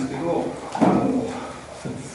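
Speech in a meeting room, with a short knock or clatter a little under a second in.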